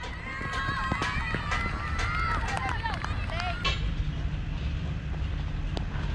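Several players' voices calling out across the ground at once, held high calls that overlap for the first three and a half seconds, with light running footfalls as a batter runs between the wickets.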